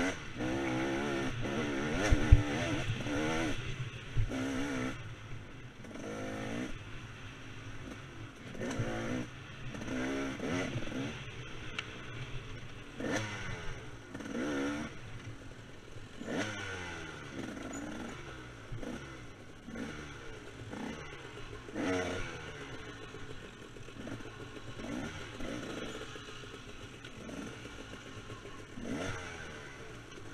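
KTM 300 two-stroke dirt bike engine revving hard, its pitch rising and falling again and again with the throttle. A few clanks and knocks from the bike over rough ground, the sharpest about two seconds in.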